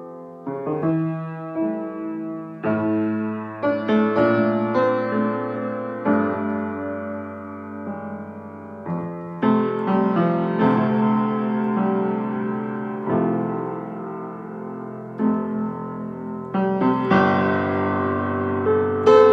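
Kawai grand piano played solo in a free improvisation: chords and melody notes struck every second or so and left ringing, starting soft and growing louder within the first few seconds.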